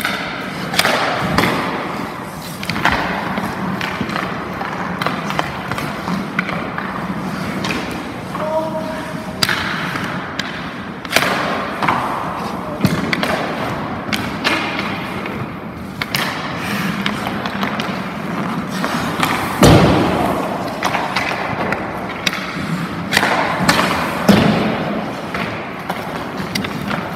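Ice rink practice noise: goalie skate blades scraping the ice, with scattered thuds and knocks throughout and one louder knock about two-thirds of the way in. Faint voices are heard in the background.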